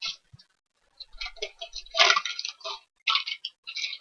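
Plastic cello wrappers of 2019-20 Panini Mosaic basketball card packs crinkling in irregular bursts as they are handled, after a short click right at the start.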